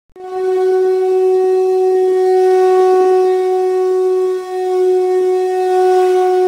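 Intro music: one long, steady blown note like a horn, held at a single pitch, with a brief dip about four and a half seconds in before it carries on.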